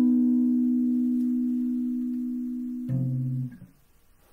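Jazz guitar: a held note left ringing and slowly fading, then a brief lower note about three seconds in that is damped after about half a second.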